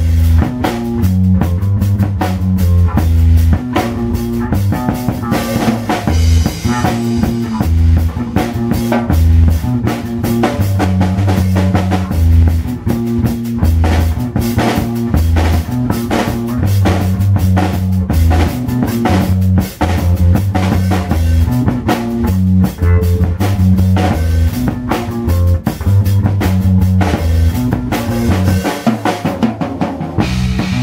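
Live drum kit and electric bass guitar jamming an instrumental dub groove: busy, dense drumming over a bass line that steps between low notes.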